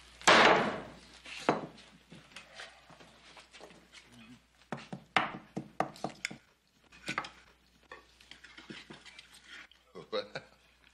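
Knife and fork clinking and scraping on a plate as a steak is cut, with scattered small knocks of dishes on a table. A louder, longer clatter comes near the start.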